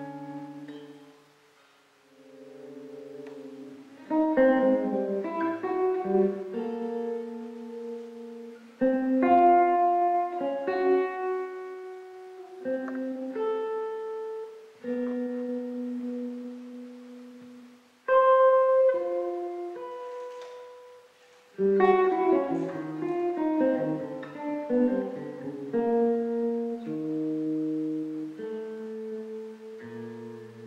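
Hollow-body electric guitar and piano playing a slow, sparse jazz improvisation. The notes come in phrases that start loud and ring away, with short lulls between them.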